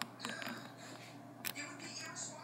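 Faint whisper-like breathy voice sounds, with two short clicks: one right at the start and one about one and a half seconds in.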